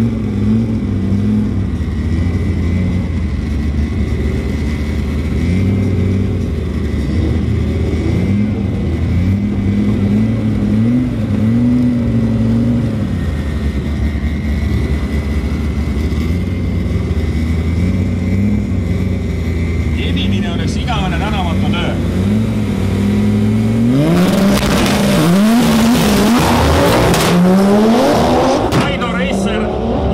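Two drag cars, one of them an Audi A4 B5 Quattro with a turbocharged 2.2-litre 20-valve five-cylinder, held at the start line with engines revved up and down in repeated swells. About twenty-four seconds in they launch, and the engine noise becomes much louder and climbs steeply in pitch as they accelerate away.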